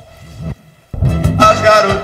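A band's song starts loudly about a second in, after a short near-quiet moment, as the paused recording is let run again.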